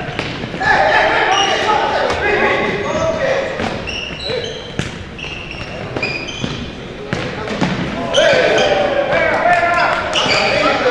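Indoor futsal play on a hardwood gym floor: shoes squeaking in short chirps, the ball being kicked with sharp thuds, and players shouting to each other, all echoing in the hall. The shouting is loudest in the last two seconds.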